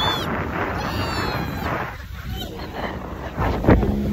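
A passenger's high shriek falling in pitch about a second in, over a steady rush of wind and spray on a speedboat running fast through waves. Heavy wind buffets the microphone near the end.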